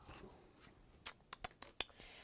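A handful of light clicks and taps starting about a second in: craft paper and a paper pad being handled and set down on a cutting mat.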